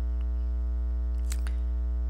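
Steady electrical mains hum with a ladder of higher hum tones above it. A short double click comes about one and a half seconds in.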